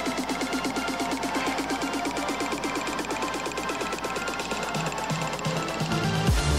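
Electronic dance music: a fast, steady run of short repeated notes, with a bass line coming in near the end.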